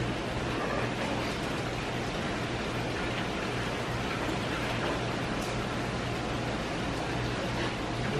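Steady rush of water spilling from the pool's raised-wall water feature into the pool, over a low steady hum.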